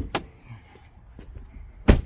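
A sharp click just after the start as the hood release lever of a 2024 Jeep Wagoneer is pulled, then the SUV's driver's door shutting with a loud, solid thump near the end.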